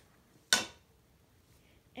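A single sharp click of a small hard object being handled or set down, about half a second in, dying away quickly.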